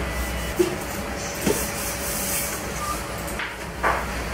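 A cloth wiping the plastic pan of an air fryer dry, with a couple of light knocks, over a steady background hiss.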